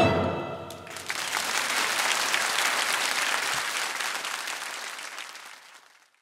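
The last chord of a choir with orchestra dies away in the hall's reverberation, then the congregation applauds, the clapping fading out near the end.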